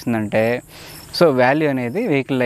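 A man talking, with crickets chirping steadily in the background.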